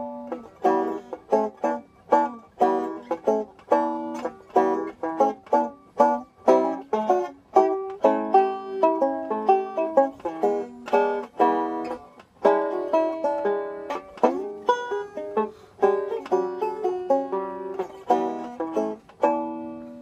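Five-string resonator banjo picked steadily through the 12-bar blues changes in E, a quick run of plucked notes and chords.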